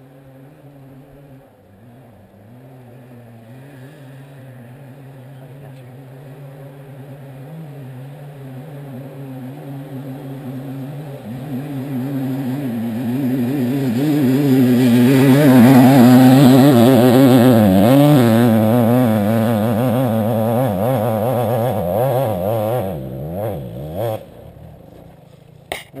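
Dirt bike engine revving under load on a hill climb, building slowly in loudness over the first half and loudest a little past the middle, its pitch swinging up and down as the throttle is worked. The engine sound drops away sharply about two seconds before the end.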